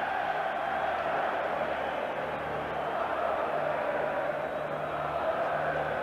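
Large stadium crowd cheering, a steady sustained din of thousands of voices.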